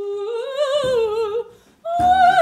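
A woman's wordless improvised singing: a held note with vibrato that steps up in pitch about a third of the way in and breaks off after about a second and a half. A low thump sounds about halfway, and a higher, wavering sung note begins right at the end.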